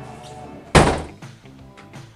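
A door shutting with a single loud thunk about three-quarters of a second in, over background music.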